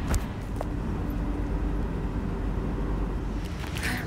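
Parked car's engine idling with its air conditioning on: a steady low hum, with a couple of light clicks in the first second.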